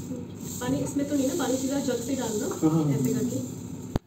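Indistinct voices talking over a steady high hiss.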